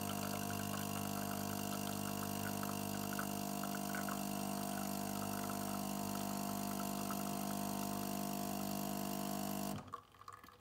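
De'Longhi Magnifica S Smart bean-to-cup machine's pump humming steadily while it pushes hot water through the coffee, with a faint trickle of coffee running into the mug. It cuts off suddenly just before the end as the brew finishes.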